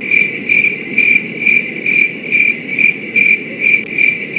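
Cricket chirping sound effect, a high chirp repeated about twice a second over a low steady hiss: the stock comedy cue for an awkward, unanswered silence.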